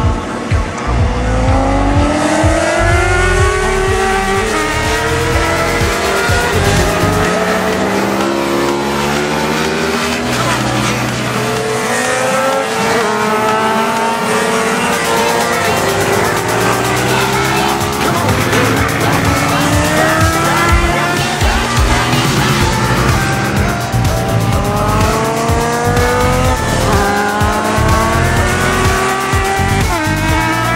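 Motorcycle engines at track speed, repeatedly revving up and dropping in pitch at each gear change as several bikes accelerate out of the corners and pass by.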